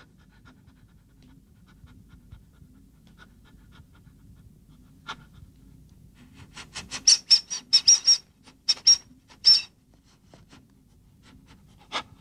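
Small black dog panting: a quick run of about a dozen short breaths, about four a second, for roughly three seconds past the middle, over a low steady hum.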